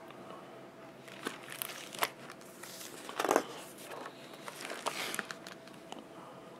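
Paper rustling and crinkling as the pages of a picture book are turned and handled, with a few sharp clicks and the loudest rustle about three seconds in.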